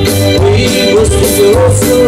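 Live amplified band music in a Latin grupero style: electric bass, drum kit and electronic keyboard playing together, loud and continuous, with a wavering lead melody carried over a steady rhythm.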